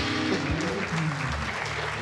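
Studio audience applauding, with the show's live band playing a few low held notes under the clapping.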